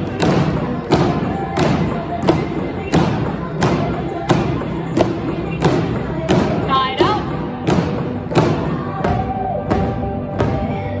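Upbeat pop song with vocals and a steady beat, with drumsticks thumping on inflated exercise balls in time with it, about three strikes every two seconds.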